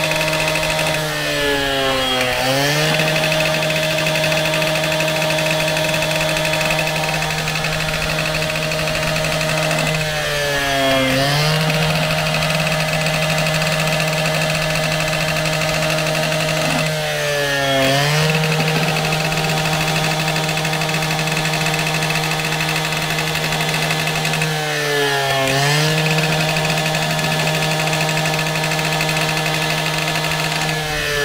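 Husqvarna two-stroke gas cut-off saw running at high revs with a 16-flute beveler on its arbor, bevelling the end of a PVC pipe. The engine note is steady, but its pitch sags and recovers four times, about every seven seconds, as the cutter bites into the pipe.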